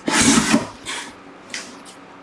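Cardboard scraping and rustling as a mystery box is handled and opened, loudest in the first half second, then a few fainter scrapes.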